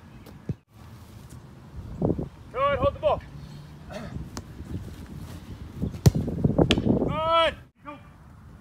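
Soccer balls kicked, with sharp thuds, the loudest about six seconds in. A high voice calls out briefly twice, about three seconds in and near the end.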